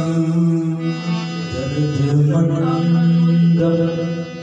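Harmonium playing sustained, droning notes that change pitch a couple of times, with men's voices chanting a devotional song along with it.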